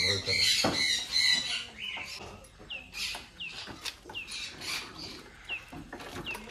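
Birds calling, then a string of short, falling chirps. A single knock comes just under a second in.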